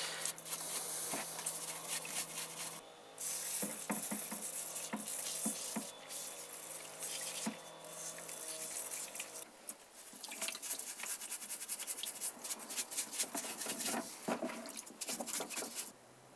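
Motorcycle brake caliper parts being scrubbed with a brush in a pot of brake cleaner: liquid sloshing and dripping, with many small clicks and taps of the parts.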